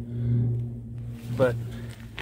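A steady low machine hum, swelling briefly near the start, with a single spoken word near the middle.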